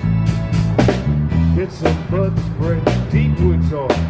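A live band playing a blues-tinged groove: drums keeping a steady beat over an electric bass line, with bending electric guitar notes and a vibraphone.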